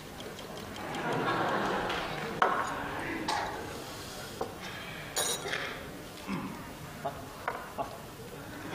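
Audience laughter swells about a second in and fades, followed by a scatter of short clinks of chopsticks and a spoon against porcelain bowls.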